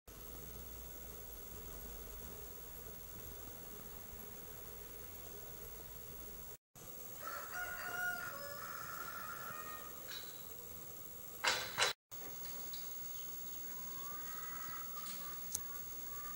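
Outdoor ambience with a low rumble at first, then drawn-out animal calls in the middle and again near the end. A short loud sound comes a little past halfway.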